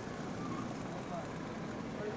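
Busy city street ambience: a steady hum of traffic with indistinct voices of people nearby.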